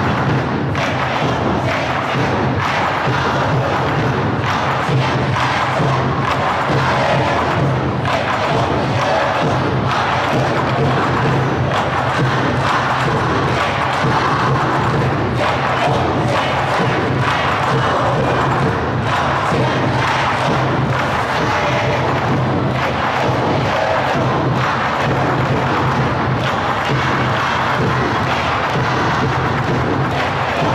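A large crowd of students chanting and cheering over loud music, with frequent drum beats.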